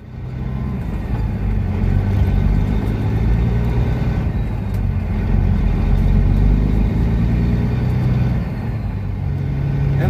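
Kenworth W900 semi truck's diesel engine running as the truck drives down the road: a steady low rumble with road noise, building up in the first second and then holding.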